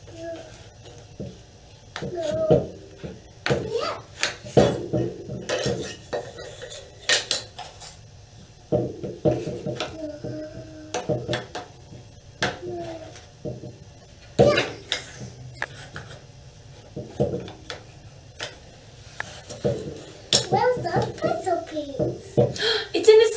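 Wooden puzzle pieces clacking and knocking against a wooden inset puzzle board and tabletop as a child handles and fits them in, in sharp irregular knocks scattered throughout.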